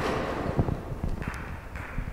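Rustling noise with a few soft, low knocks.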